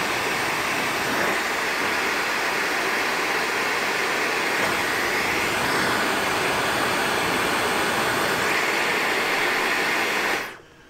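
Dyson Supersonic hair dryer running, a steady rush of air at a high, strong airflow setting.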